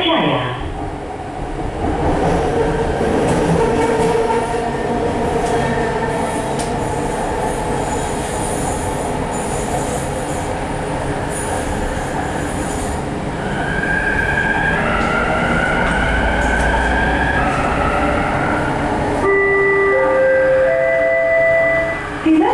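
rapidKL ART Mark III metro train running, heard inside the carriage: steady rolling and running noise that swells about two seconds in. From about two-thirds in, a high whine rises slightly in pitch, and near the end three short tones step up in pitch over a steady high tone.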